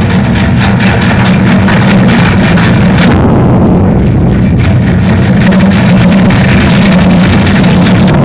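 Heavy machinery running with a loud, steady, engine-like hum under a rushing hiss; the hiss thins for a moment about three seconds in, then returns.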